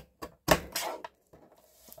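Guillotine paper trimmer's blade arm working as a sliver is cut off a paper envelope: a couple of light clicks, then a single sharp thunk about half a second in.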